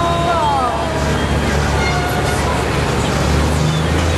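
Vintage Redfern fire pumper's engine running as the truck rolls slowly past, a steady low rumble, with spectators' voices over it.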